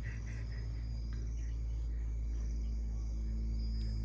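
Faint caller-ringback music playing through a phone's loudspeaker while an outgoing call rings, over a steady low hum.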